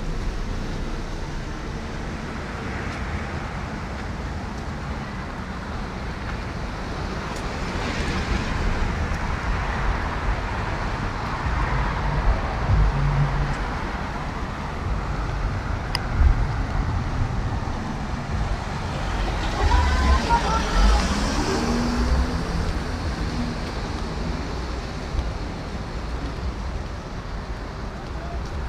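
Road traffic on a town street: cars passing, the sound swelling twice, about a third of the way in and again about three quarters of the way in.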